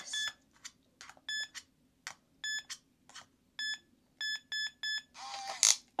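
Cheap RFID cabinet lock beeping as a cloned RFID tag is held to it, accepting the tag. Short high electronic beeps come about once a second, then three quick beeps near the end, with faint clicks between.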